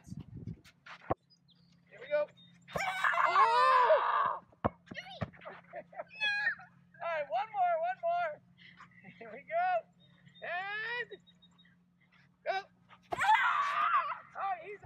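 Children's high-pitched excited shouts and squeals in separate outbursts, loudest about three seconds in and again near the end, with a few short sharp knocks and a faint steady low hum underneath.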